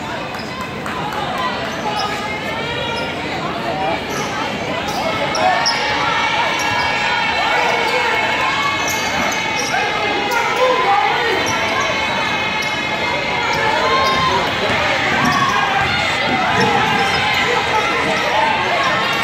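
A basketball bouncing on a hardwood gym floor during play, with chatter from the crowd in the stands, in a large echoing gymnasium.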